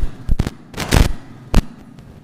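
A close microphone being handled: a quick run of loud knocks and bumps, about four in two seconds, the longest and loudest about a second in.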